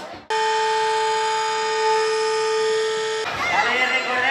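Air horn sounding one long, steady blast of about three seconds that starts abruptly and cuts off, after which crowd chatter resumes.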